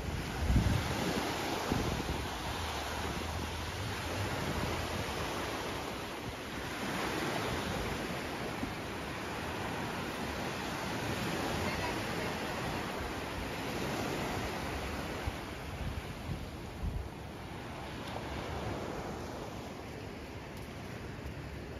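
Small waves breaking and washing up a sandy beach, a steady wash that swells and eases every few seconds. Wind rumbles on the microphone, most in the first couple of seconds.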